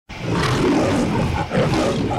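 Lion's roar sound effect, loud, breaking off briefly about one and a half seconds in and starting again.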